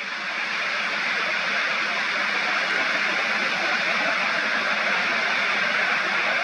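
Beach ambience: a steady, even rushing noise of surf and air that swells over the first second, then holds level.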